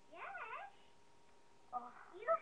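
A short, faint vocal call, about half a second long, with a pitch that swoops up and down, then a second voice starting near the end.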